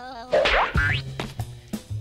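Cartoon sound effect: a quick springy 'boing' that glides up in pitch with a warble about half a second in, over background music holding a low bass note.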